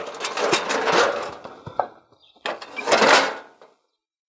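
Steel cattle squeeze chute rattling and clanking as its head gate is opened to release a calf. There are about two seconds of metal clatter ending in a sharp clank, a brief pause, then another burst of rattling.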